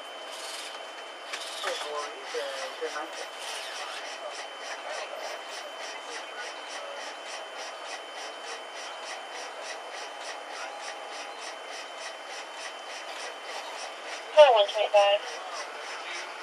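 Rhythmic rubbing strokes, about two a second, as of CPR chest compressions on a patient on an ambulance stretcher, with a faint steady high tone under them. A brief burst of raised voices comes near the end.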